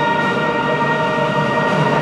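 Symphony orchestra and choir holding a loud sustained chord.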